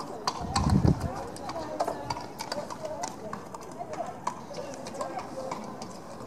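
A horse's hoofbeats and tack at a trot, a steady run of short clicks, with faint voices murmuring behind; a brief low rumble about half a second in.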